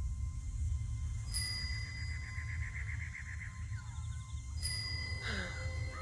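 Film-trailer sound design: a steady low rumbling drone, with high ringing tones that start suddenly about a second in and again near the five-second mark.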